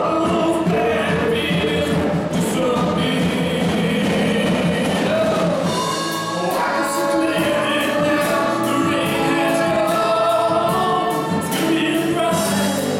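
Live gospel song: a male lead singer with backing singers over a full band.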